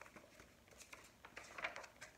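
Faint rustling of paper book pages being turned by hand, loudest about a second and a half in.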